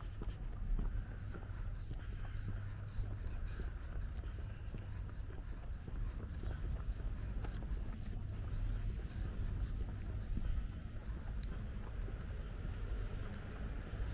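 Steady low rumble of outdoor background noise, with faint scattered ticks and taps over it.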